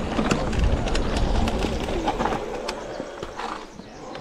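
Mountain bike riding noise: low wind and tyre rumble with scattered sharp clicks, dying away over the second half. Two short bird calls sound about two seconds in and again near the end.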